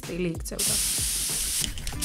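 Aerosol spray-paint can spraying: one continuous hiss that starts about half a second in.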